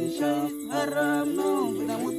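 A man singing a melody that bends and glides in pitch, over steady held accompanying notes.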